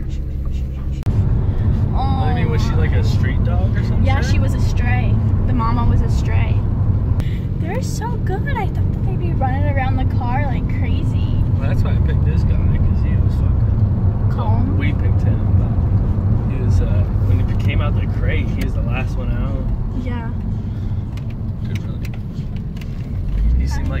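Steady road and engine rumble inside a moving car's cabin, with short, high, wavering whines from a puppy at times.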